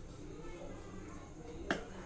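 A single sharp click near the end, over a quiet kitchen background.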